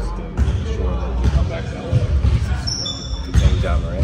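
Basketballs bouncing on a hardwood gym floor: a run of dull thuds roughly every half second to second, with a brief high squeak near the end, under faint talk.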